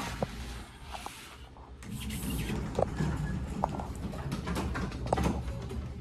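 Elevator's two-speed doors sliding open with no arrival chime, as the bell is not working, followed by footsteps and a few light knocks as someone steps into the car, over a steady low hum.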